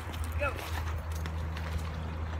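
Several stones thrown at once and skipping across a shallow river, heard as a few light taps and splashes over a steady low rumble.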